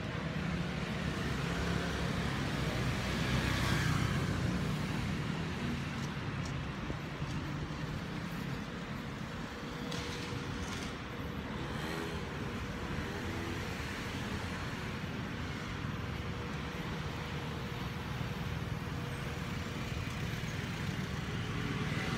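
Street traffic noise: a steady rumble of passing road vehicles, with one louder pass about three to four seconds in.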